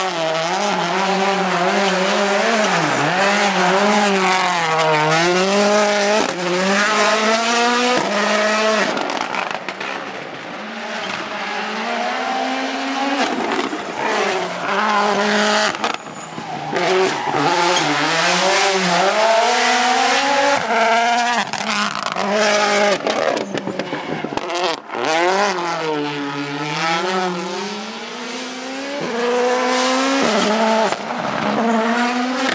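Ford Puma Rally1 rally car's 1.6-litre turbocharged four-cylinder engine driven hard through a run of corners. The pitch climbs through the gears and drops off on braking, over and over, with brief cuts in the sound between.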